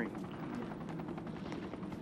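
Steady outdoor background rumble, even and unbroken, between lines of dialogue.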